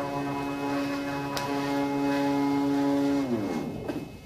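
Stepper motors of the 3D-printed Thor robot arm whining at a steady pitch as the arm moves, then gliding down in pitch and stopping near the end as the motors slow. A single click a little over a second in.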